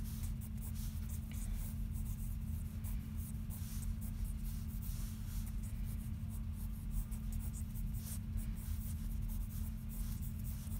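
Graphite pencil scratching across sketchbook paper in many short, irregular strokes, over a steady low hum.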